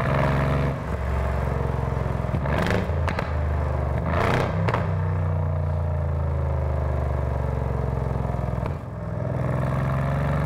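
Mercedes-AMG C63 S's twin-turbo V8 with an Akrapovic exhaust, running under load in Race mode, with short bursts of exhaust crackle about two and a half and four seconds in.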